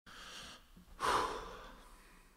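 A person breathing: a faint breath, then a louder breath about a second in that fades away.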